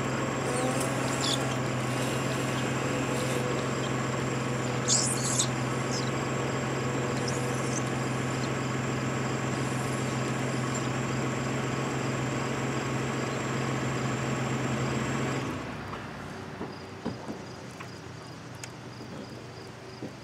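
Car running with its new Michelin Endurance XT wiper blades sweeping a wet windshield, a steady hum with a little squeak from the blades. The hum cuts off about three-quarters of the way through, leaving a few faint clicks.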